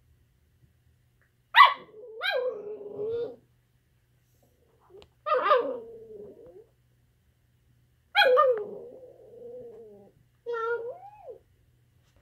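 Miniature schnauzer "talking": four drawn-out vocal bouts a few seconds apart. Each starts sharply like a bark and slides down into a long wavering note.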